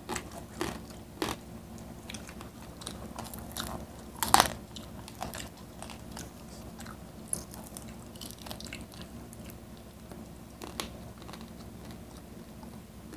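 Close-miked mukbang eating: crunchy bites and chewing of crispy fried food, with scattered crackles and one sharp, loud crunch about four seconds in.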